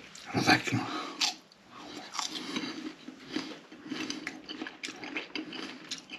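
Close-miked chewing and mouth sounds, with many short crunching clicks.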